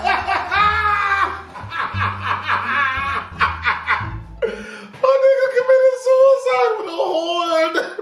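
A man laughing hard in rising and falling peals, then breaking into a long, drawn-out high wail of laughter in the last three seconds.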